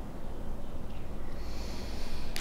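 A woman drawing a breath in through her nose while holding a stretch: a soft hiss that builds from about halfway through, over a steady low room hum.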